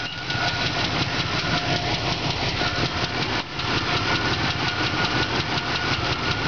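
Original Oldsmobile 350 V8 idling steadily and a little shaky, with a rapid, even pulse from the firing through the glasspack exhaust. The owner says this engine has an exhaust manifold leak on the left side and needs a lifter.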